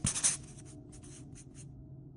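Marker pen writing on a whiteboard: a run of short strokes, the first the loudest, stopping about a second and a half in.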